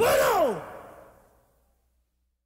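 A voice giving one long sigh-like cry that slides steeply down in pitch over about half a second and fades out, closing a percussion track. Silence follows.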